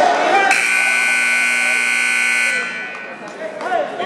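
Scoreboard buzzer at a wrestling match sounding one steady blast of about two seconds, the signal that a period has ended.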